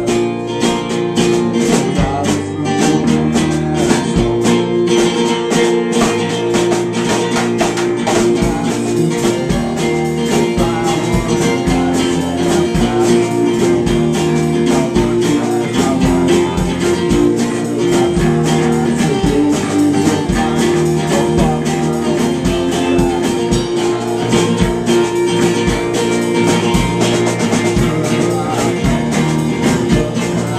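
Live band playing a rock song: strummed acoustic-electric guitar, electric guitar and a drum kit keeping a steady beat.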